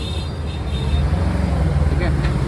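Steady low rumble of nearby street traffic, with a few faint high tones in the first second.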